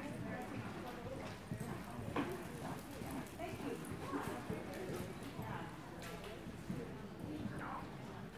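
Hoofbeats of a reining horse cantering on soft arena dirt, in a quick repeating rhythm, with faint voices in the background.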